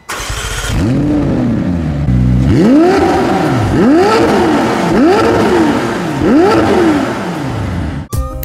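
McLaren Senna's 4.0-litre twin-turbo V8 revved in a series of about six short blips, each one rising in pitch and falling back; the first blip is lower than the rest.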